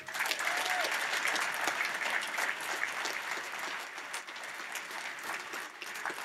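Audience applauding: many hands clapping, starting right as the speech ends and easing off a little in the second half.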